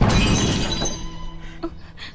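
Crockery dropped on a hard floor, a sudden crash of shattering that clatters and dies away over about a second.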